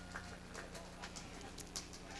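Sparse, faint hand clapping from a small audience, a few irregular claps a second, over a low steady hum from the sound system.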